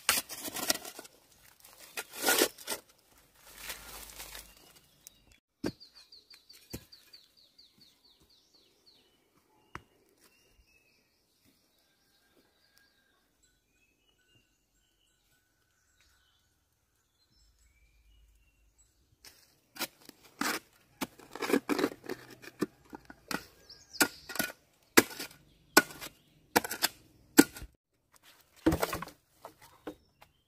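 Bursts of rustling and crackling, in two spells with a quiet stretch between them that holds a brief rapid high-pitched trill and a few faint chirps.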